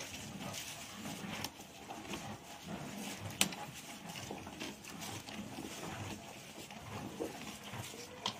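Hand milking of a Gir cow: milk squirting from the teat in repeated hand strokes, heard as irregular short hissing clicks, with low sounds from the cow underneath.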